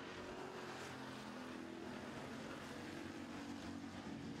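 Street stock race cars' engines running at speed on a dirt oval, a steady drone whose pitch shifts slightly as the pack goes by.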